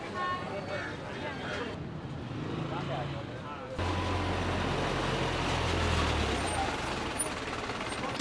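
Street noise with faint voices, then from about four seconds in the steady low rumble of a truck engine running close by, which dies away about two and a half seconds later.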